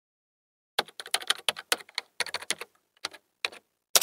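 Computer keyboard typing: a quick run of keystrokes in uneven clusters, starting about a second in, as text is typed into a search bar.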